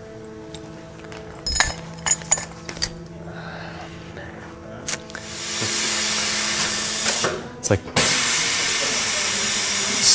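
A few metallic clanks as the hose-end cleaning tool is handled and set down, then a loud steady hiss from the StoneAge Navigator rotary hose drive starting about five seconds in. The hiss breaks off for a moment with a couple of clicks and then resumes.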